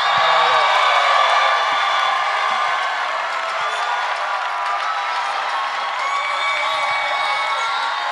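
Live audience cheering, whooping and applauding at the end of a rap verse. The cheering is loudest in the first second or two, then eases a little and holds steady.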